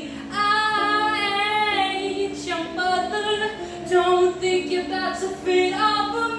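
A young woman singing unaccompanied, holding long sustained notes one after another.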